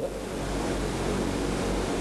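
Steady background hiss with a low hum underneath, the constant noise of the hall and its recording, with no speech.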